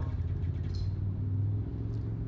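A steady low rumble in a pause between speech.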